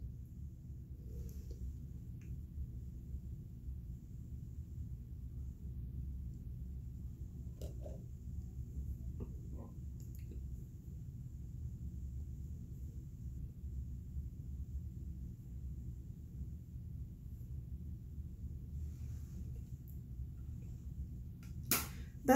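Quiet room tone: a steady low hum, with a few faint soft clicks near the middle.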